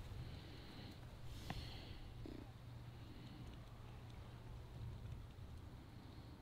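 Faint low wind rumble on the microphone, with a single faint click about one and a half seconds in.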